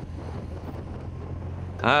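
Wind rushing over the microphone of a camera riding in a bunch of racing road cyclists, over a low steady rumble. It stops suddenly near the end, where a man says "Ah".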